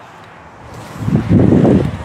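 Wind buffeting the microphone: a low, uneven rumble that swells about a second in.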